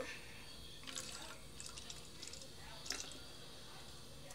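Water tinted with red food colouring and mixed with glue pouring from a glass measuring cup into the narrow neck of a plastic spray bottle. The pour is faint: a quiet trickle with scattered small drips and splashes.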